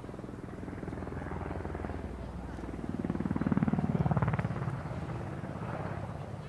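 Helicopter rotor beat, a fast, even chopping that grows louder to a peak about halfway through as the helicopter passes close, then fades.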